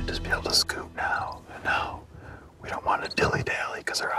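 A man whispering in short, broken phrases, with sharp hissing sibilants.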